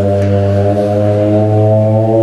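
A loud, low, steady droning tone with many overtones, its pitch creeping slightly upward: a music-like drone played for the robots' vibration routine.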